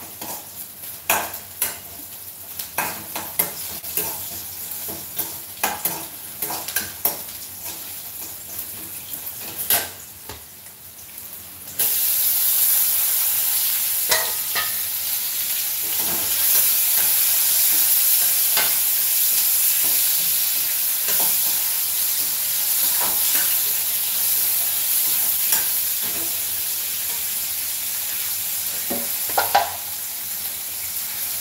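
Metal utensil clicking and knocking against a pan while stirring. About twelve seconds in, a loud steady sizzle of frying starts suddenly and carries on, with occasional stirring clicks over it.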